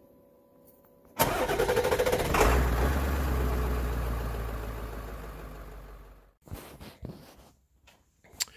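A car engine cranking in rapid pulses, catching about two and a half seconds in with a deep rumble, then running and fading out over a few seconds. Faint steady tones come before it in the first second.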